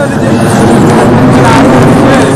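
Jet aircraft flying over in formation: a loud, steady roar, with voices underneath.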